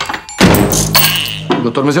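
A door pulled shut with a single loud thunk about half a second in.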